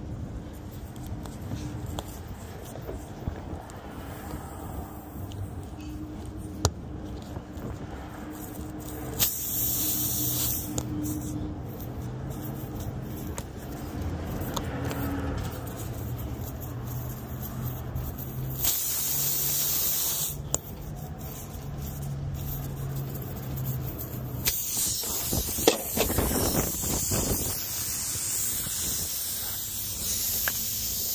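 Compressed air hissing out of a punctured car tyre in bursts while a reamer and plug-insertion tool are worked in the hole: short hisses about ten and twenty seconds in, then a longer hiss from about twenty-five seconds. Small clicks and scrapes of the tools on the tread, over a steady low hum.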